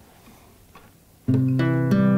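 Acoustic guitar beginning a song's introduction: after a quiet first second, a chord rings out suddenly and further plucked notes follow, ringing on.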